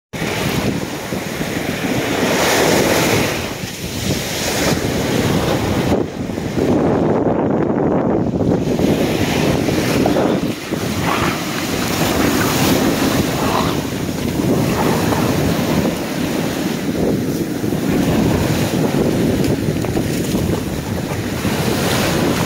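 Waves breaking and washing through foamy shallows, in loud rolling surges, with wind buffeting the microphone. The sound goes briefly dull and muffled about six seconds in, for a couple of seconds.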